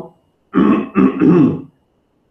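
A man clearing his throat, a short two-part voiced "ahem" that is louder than his speech.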